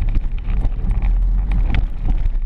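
Small car's engine and road rumble heard from inside the cabin as it drives off, with frequent clicks and rattles from the GoPro camera knocking about inside its housing.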